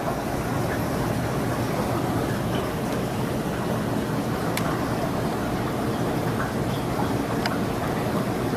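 Steady rushing noise of a reef aquarium's pumps and circulating water, with a low hum underneath and a few faint clicks.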